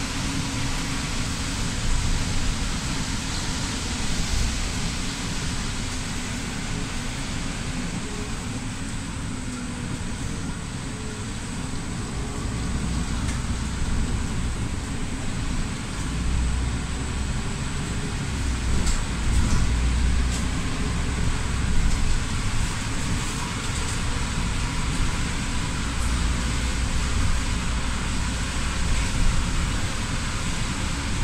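Cabin noise of a Solaris city bus driving in heavy rain: engine running and tyres hissing on the wet road, with rain on the bus. The low engine rumble grows louder in stretches in the second half as the bus pulls away.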